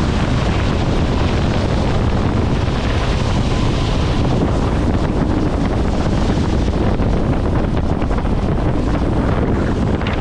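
Steady wind buffeting the microphone over the rush of a motor yacht's bow wave and spray along the hull at planing speed.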